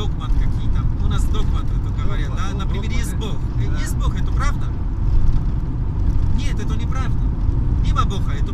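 Passenger van driving, its engine and road noise making a steady low rumble inside the cabin, with a man talking over it.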